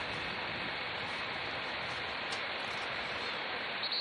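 Steady, even rushing noise from the live race feed, typical of wind and engine noise picked up by the camera motorbike riding alongside a racing cyclist.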